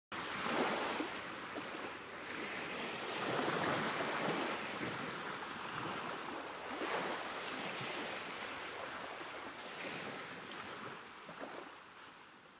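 Ocean surf sound effect: a rushing wash of noise that swells and recedes every few seconds, like waves coming in, fading out near the end.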